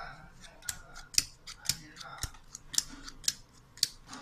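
Plastic hwatu (hanafuda) cards being dealt one by one onto a table, each landing with a sharp click, two or three a second at uneven spacing.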